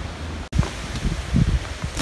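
Wind buffeting the microphone: a steady rush with low rumbling gusts and some rustling, broken by a brief dropout about half a second in.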